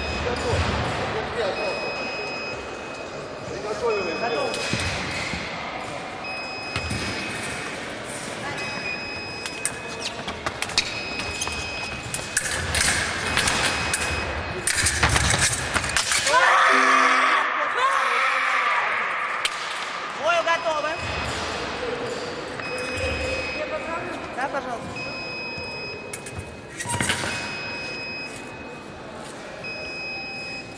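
Fencing in a large hall: footwork and blade clashes build to a close exchange midway, and the scoring machine signals as a hit lands, over voices around the hall. A short high beep repeats about every second and a half.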